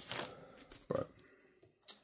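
Foil wrapper of a Panini Premium Stock trading card pack faintly crinkling as it is pulled off the cards, with one sharp click near the end.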